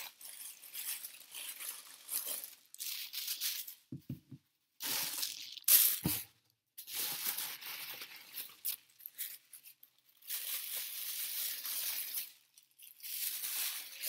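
Paper and plastic wrapping crinkling and tearing in irregular bursts as wrapped items are unwrapped by hand, with a couple of brief knocks about four and six seconds in.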